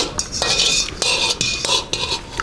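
Metal spoon and fork scraping across the bottom of a wok, gathering the last noodles: about four scrapes in a row, with the pan ringing faintly.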